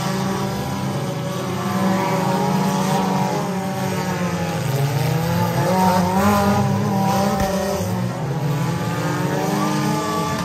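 Engines of several figure-8 race cars running together on a dirt track, their overlapping pitches rising and falling as the cars accelerate and back off through the course.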